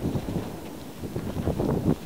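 Wind buffeting the camera microphone: an uneven low rumble that rises and falls in gusts.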